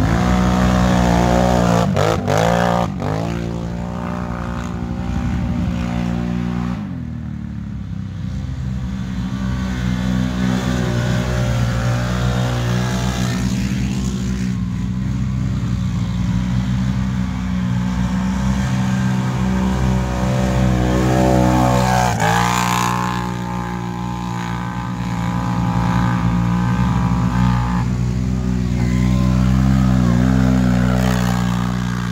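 ATV engines run hard through mud, revving up and easing off again and again, with a sharp rev about two-thirds of the way through. The yellow machine is a Can-Am Renegade, a V-twin ATV on 36-inch tyres.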